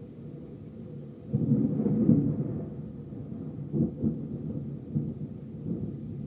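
Thunder rumbling over steady rain: a loud low roll starts suddenly about a second in, then dies away in several smaller rumbles.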